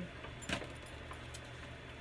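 Quiet handling noise at a tabletop: a light click about half a second in and a few faint clinks, with a low steady hum underneath.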